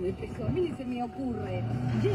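Quiet voices talking inside a car's cabin over the low, steady hum of the car's engine running, the hum firmer from about halfway through.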